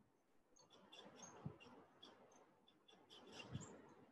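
Near silence: faint room tone over a webcam microphone, with scattered faint high-pitched chirps and two soft low thumps.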